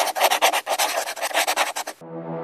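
Scribbling sound effect, like a pencil scratching quickly across paper, in a rapid run of short scratchy strokes.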